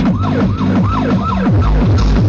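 Techno played loud through a free-party speaker stack: a siren-like synth riff swoops up and down about three times a second over falling bass glides. A heavy kick drum comes in near the end.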